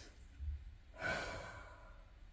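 A person's soft sigh, one breath out about a second in that fades away, with a faint low thump just before it.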